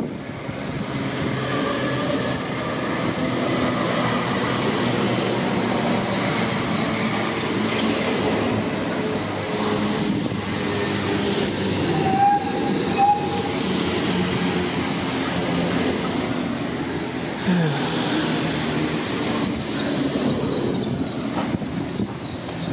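GWR Class 802 bi-mode train running into the platform: a steady rumble of wheels on rail with a faint traction whine as the coaches pass close by, and two short high tones about twelve seconds in.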